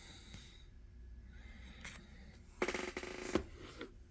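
Faint handling sounds on a wooden reloading bench: a couple of light clicks, then a short rustle and knock about two and a half to three and a half seconds in, as things are moved and picked up.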